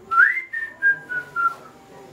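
Whistling: a short phrase that slides quickly up, then steps down through about four shorter, lower notes.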